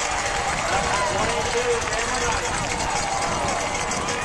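Many voices calling and shouting at once from spectators and players at an outdoor football game, overlapping so that no clear words come through.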